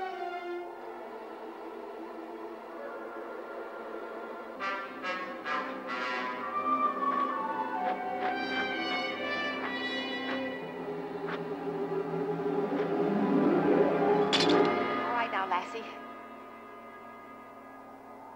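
Dramatic orchestral score led by brass, building tension and swelling to its loudest about fourteen seconds in, where one sharp crack sounds, then dying away near the end.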